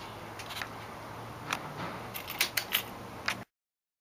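Several sharp mechanical clicks and taps over a steady low hum, a cluster of them about two seconds in; the sound then cuts off abruptly.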